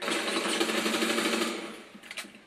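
Rapid rattling burst of automatic gunfire from a first-person shooter game played on a PC, starting suddenly and dying away after about a second and a half.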